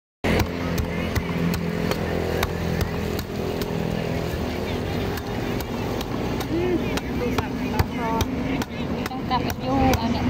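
Cleaver chopping again and again into the husk of a young green coconut, shaving it, about three sharp knocks a second. Under it, a steady low hum and, in the second half, background voices.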